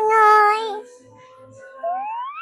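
A young girl's voice holding a long high sung note, loud for about a second and then thinning out, with a rising glide in pitch right at the end.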